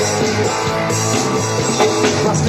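Live rock band playing an instrumental passage through a festival PA: electric guitar over bass and drum kit, at a steady, loud level.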